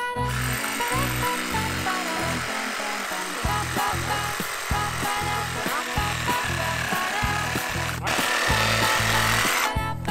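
A DeWalt cordless reciprocating saw cuts through a Fraser fir trunk with a steady buzz. It breaks off briefly about eight seconds in and stops just before the end as the log comes apart. Background music plays throughout.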